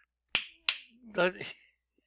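Two sharp finger snaps about a third of a second apart, followed by a brief wordless sound from a man's voice.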